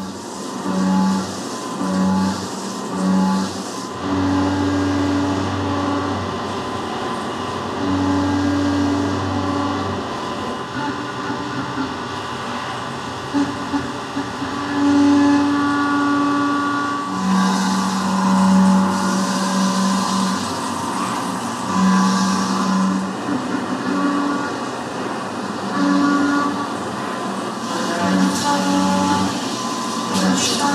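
Tormach 770MX CNC mill roughing an aluminium workpiece on a fourth-axis rotary under coolant spray, with steady pitched tones that come and go every second or few over a continuous hiss. The cut runs without chatter.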